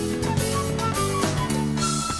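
Band playing salsa-style instrumental music, with timbales struck under sustained chords and a short melody line of quick high notes.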